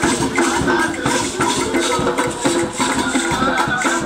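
Live group singing of a gospel song, accompanied by hand drums and a beaded gourd shaker rattling out a steady beat.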